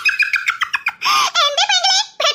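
High-pitched cartoon character voices talking in quick dialogue.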